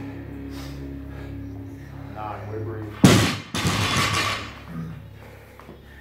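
A barbell loaded with rubber bumper plates dropped from overhead onto the gym floor: a loud crash about three seconds in, a second impact as it bounces half a second later, then ringing that fades, over background music.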